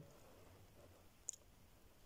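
Near silence (room tone) with one faint short click a little past the middle.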